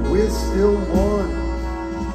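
Live rock band playing an instrumental passage: a lead line of notes bending up and down in pitch, most likely electric guitar, over held organ chords and a steady bass.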